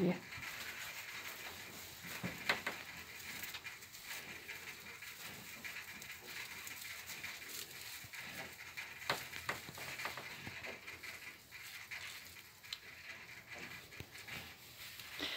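Faint rustling of straw bedding with scattered light crackles as newborn piglets move about in it.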